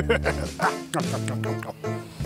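Background music under a quick run of short, sharp animal calls, several a second, that stop just before the end.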